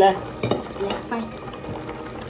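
A kitchen utensil knocks once against a metal cooking pot about half a second in, followed by faint pot-and-spoon sounds.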